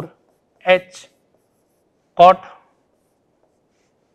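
A man saying a few short words, with a marker writing on a whiteboard.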